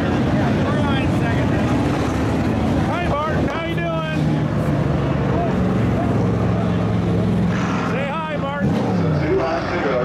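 Hobby stock race car engines running as the cars circle the track, one dropping in pitch as it goes by near the end, with voices over them.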